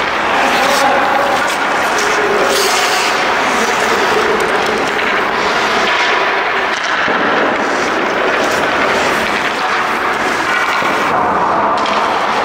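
Indoor ice rink sound of hockey practice: a steady, loud hall noise with skate blades scraping the ice, a few sharp stick-and-puck knocks, and voices.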